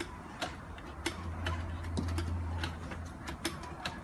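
Automatic donut machine running, its batter depositor clicking about twice a second as it drops dough rings into the hot oil, over a steady low hum.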